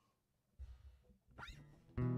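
Near silence, then a faint low rumble about half a second in and a quick rising squeak of a finger sliding up a wound guitar string.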